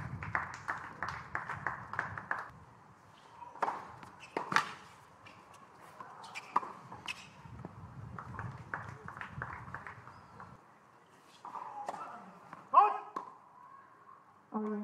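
Sounds of a hard tennis court: a run of quick light clicks early on, then two sharp racket-on-ball strikes around four seconds in, with scattered softer knocks. Near the end comes a brief, loud sound with sliding pitch.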